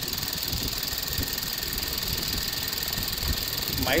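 Ford Duratec 2.0 L four-cylinder petrol engine idling steadily under an open bonnet, running very smoothly and quietly.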